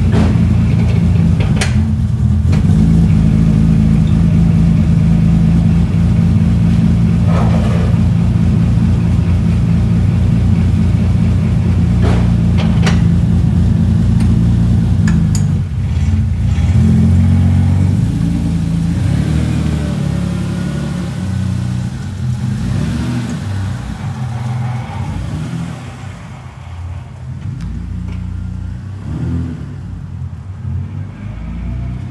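Lexus SC300's 2JZ-GE straight-six running cold just after a cold start, idling steadily. About halfway through the car pulls away and its engine sound changes, then fades as it drives off.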